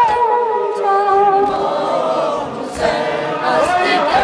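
A boy's voice chanting a Muharram lament (noha) into a microphone in long, wavering sung lines, with other voices joining in.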